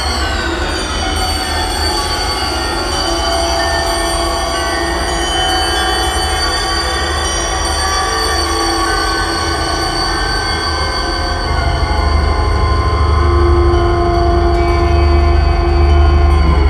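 Eurorack modular synthesizer music: layered sustained tones and drones over heavy bass. The high tones glide downward at the start, and the bass swells louder about twelve seconds in.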